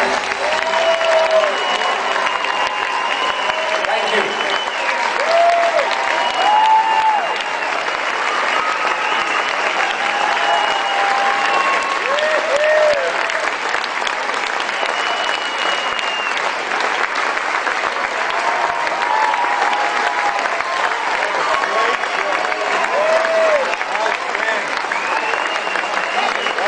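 Large concert audience applauding and cheering at the end of a song: steady dense clapping with shouted whoops and long whistles rising above it.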